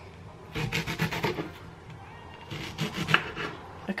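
Kitchen knife cutting strawberries on a wooden chopping board: a few short scraping cuts about half a second in, then another bunch near three seconds.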